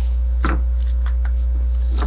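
Steady low electrical hum, with a few faint clicks of small parts being handled.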